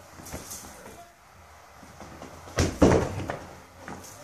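Two quick thumps of an inflatable beach ball, close together about two and a half seconds in, against a quiet room.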